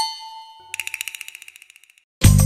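Electronic chime sound effect from a news-programme opening, struck once and ringing as it fades. Less than a second later it turns into a fast pulsing repeat, about a dozen pulses a second, that dies away.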